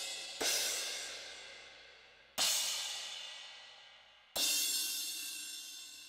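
A sampled cymbal from an Alesis Strata Prime electronic drum kit, its pad struck three times about two seconds apart. Each hit rings out bright and fades away before the next.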